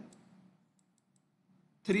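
A few faint small clicks from the device used to write on a computer screen, three in quick succession about a second in, in an otherwise near-quiet pause; a man's voice resumes near the end.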